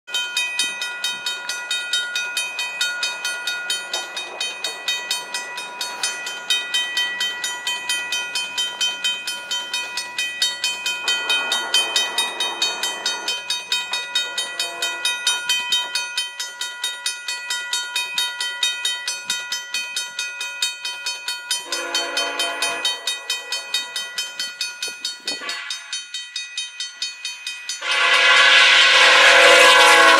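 Level-crossing warning bell ringing rapidly and steadily while the horn of an approaching VIA Rail GE P42DC locomotive sounds several long blasts, then a short one. Near the end the locomotive reaches the crossing on a long final blast and the train's passing noise suddenly becomes loud.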